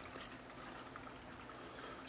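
Faint, steady sound of water running and trickling into a large reef aquarium from a carbon reactor's outflow, run at full flow.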